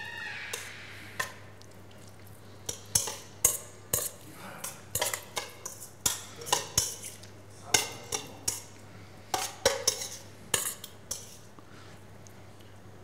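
Metal spoon and fork clinking and scraping against stainless steel bowls as rocket salad is scooped up and served, in a string of irregular sharp clinks.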